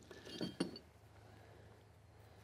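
A few faint metal clinks in the first half second as the old ball joint is worked off the steel puller adapter, then near silence.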